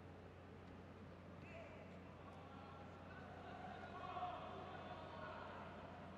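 Quiet sports-hall ambience: faint distant voices over a steady low hum, a little louder about four seconds in.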